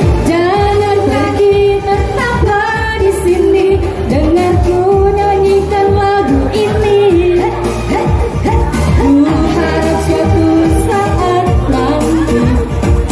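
Women singing a pop song into microphones over amplified backing music, holding long wavering notes.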